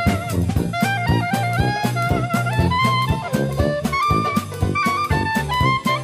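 Traditional New Orleans-style jazz band playing an instrumental passage: trumpet, trombone and clarinet over tuba, banjo and drums. The lead line climbs in steps over a steady beat.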